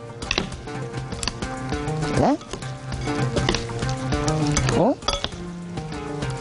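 Coleslaw of shredded cabbage and carrot in mayonnaise dressing being stirred with a metal spoon in a glass bowl: a wet rustling with short clicks of the spoon on the glass, over steady background music.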